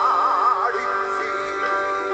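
Live band music: a male lead vocal holds a note with wide vibrato for the first half-second or so, over sustained keyboard chords.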